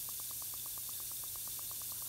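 A Beaker Creatures reactor pod fizzing as it dissolves in a bowl of water, its bubbles ticking in a fast, even patter of about eight a second over a faint hiss.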